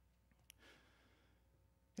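Near silence: room tone, with a small click about half a second in and a faint breath just after it.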